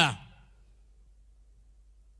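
A man's voice over a microphone trails off in the first moment, then a pause with only a faint, steady low hum.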